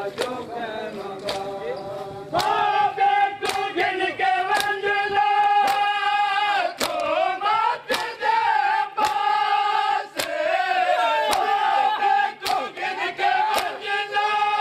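Matam mourning: men chanting a noha in long, loud held notes that swell about two seconds in. Sharp slaps of hands striking bare chests land in time about once a second.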